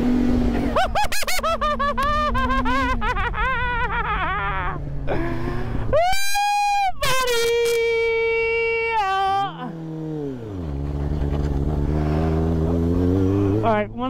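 Motorcycle engine running on the move, its pitch climbing, holding and dropping several times as the throttle and gears change.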